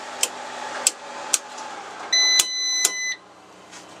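Circuit breakers in a home electrical sub-panel snapping off one after another, several sharp clicks, as the loads are switched off. About halfway through, a steady electronic beep sounds for about a second, with two more clicks during it, and a steady background hum stops as the beep ends.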